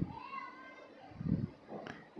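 A child's high voice, briefly rising and held, faintly heard. A short low sound follows a little past a second in, and a click near the end.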